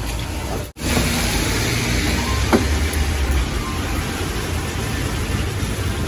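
Steady outdoor background noise with a low rumble. It cuts out completely for a moment under a second in, and there is a faint click about two and a half seconds in.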